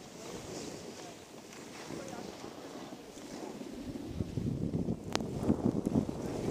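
Wind on the microphone and skis sliding over snow on a downhill run, getting louder over the last two seconds, with a sharp click about five seconds in.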